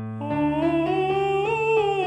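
A man singing in true falsetto, a vocal exercise starting on D4 with piano accompaniment: the voice climbs step by step and turns back down near the end.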